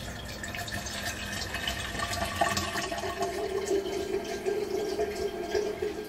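Water from a kitchen faucet running into a coffee maker's carafe, filling it, with a steady hollow note coming in about halfway through.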